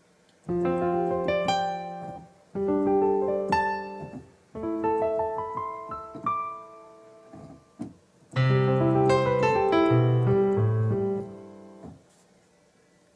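Piano sound of a Roland Fantom workstation keyboard (2001) played in four chord phrases of about two seconds each, with short silent pauses between them and a single brief note shortly before the last phrase. The last phrase is the fullest in the bass and dies away near the end.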